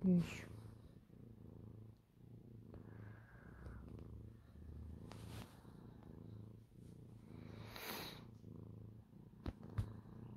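Domestic cat purring steadily while being stroked, a low hum that comes in waves about a second or so long. Two short sharp clicks near the end.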